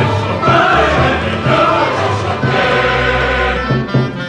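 Mixed choir singing with a small chamber ensemble, over low notes repeated about twice a second; a low note is held near the end.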